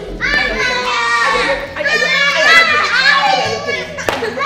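Two young children crying and wailing while being beaten, their high-pitched voices overlapping with hardly a break.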